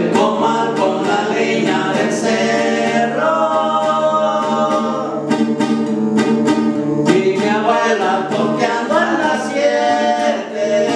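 Two men singing a corrido in duet, holding long notes, over two acoustic guitars strumming a steady rhythm.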